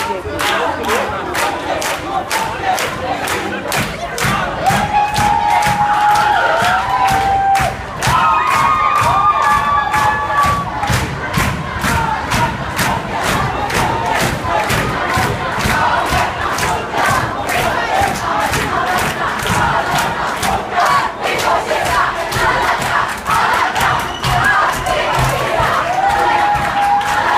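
A large crowd of demonstrators shouting and chanting in a tiled metro station passage, with some long held shouts, over a steady beat of about two to three hits a second.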